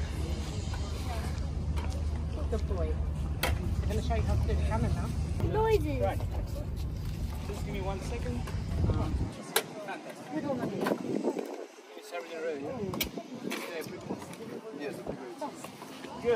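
Indistinct voices of people talking, with no cannon shot. A low steady rumble runs under the voices and cuts off abruptly about nine seconds in.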